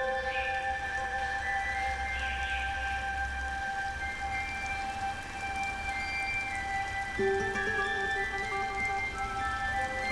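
Instrumental hymn music with no singing: long sustained chords held over a soft hiss, with a lower note coming in about seven seconds in.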